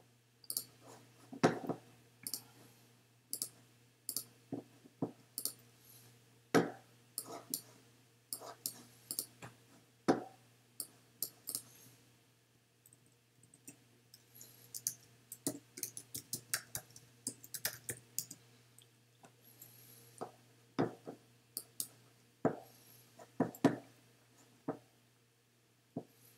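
Computer keyboard keystrokes and mouse clicks, sharp and irregular, with a quick run of keystrokes a little past the middle as a short terminal command is typed. A faint steady low hum lies underneath.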